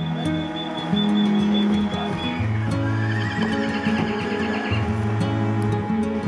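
Background music with slow held tones, and a horse whinnying, a quavering call about halfway through.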